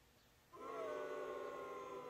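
A steady held tone with several overtones, starting about half a second in after a moment of silence.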